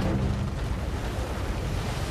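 Glacier ice breaking off its face and falling into the water: a steady rushing noise like surf.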